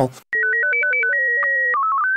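Simple electronic music of pure, beeping synthesizer tones: a two-voice melody, a higher line over a lower one, stepping note by note, starting a moment after the speech stops.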